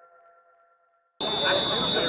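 The last held tones of electronic intro music fade out into near silence; a little past halfway the game's field audio cuts in suddenly with people's voices and a steady high-pitched tone.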